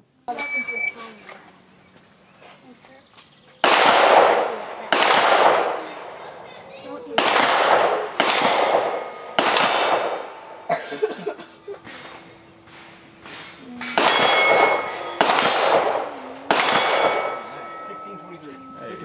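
About nine 9mm pistol shots from a Glock 17 Gen4, fired in three quick strings at AR500 steel plates. Each shot is followed by the ringing of a struck steel plate.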